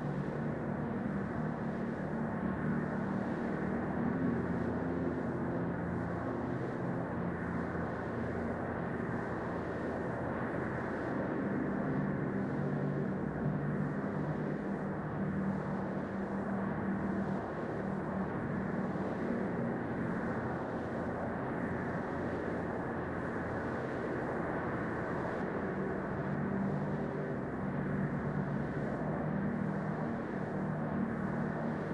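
Dark ambient drone: a steady, muffled wash of rumbling noise with low sustained tones that fade in and out.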